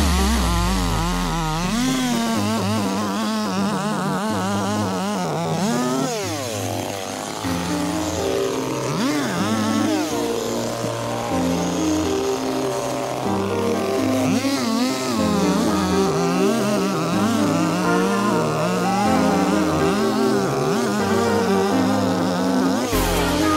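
Petrol chainsaw running and cutting through logs, mixed with background music.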